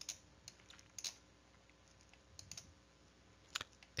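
A handful of faint, irregular clicks and taps from computer input during a pause in a recorded lecture.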